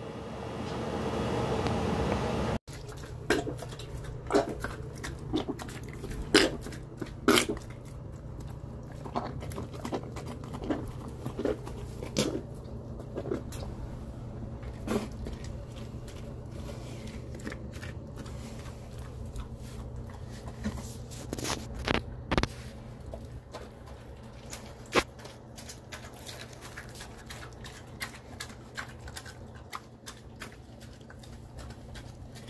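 Giant schnauzer puppy eating raw pork stew chunks from a tray: irregular chewing and biting with many sharp clicks and short crunches, over a low steady hum. A brief rising rush of noise comes before the eating starts.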